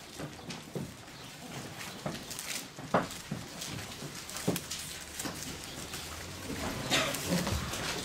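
Soft paper rustling and light handling knocks at a pulpit over room tone, with a sharper knock about three seconds in.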